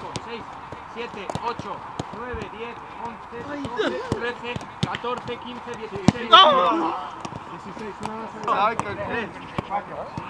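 A football being kicked back and forth in a quick passing drill: repeated short, sharp thuds of boots striking the ball on grass. Players shout over it, loudest about six seconds in.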